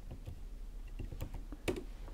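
Computer keyboard key presses: a few scattered light clicks, the two clearest in the second half.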